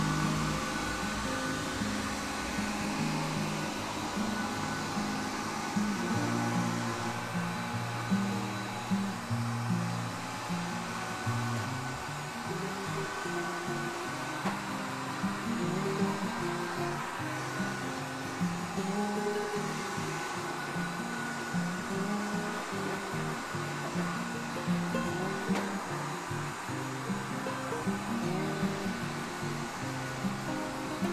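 Robot vacuum cleaner running with a steady whir as it cleans the floor, under background music: a melody of short plucked notes.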